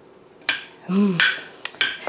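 Knife clicking and scraping against a plate while slicing soft oven-baked pumpkin, a few sharp clinks in the second half; the blade passes through the cooked flesh easily and strikes the plate.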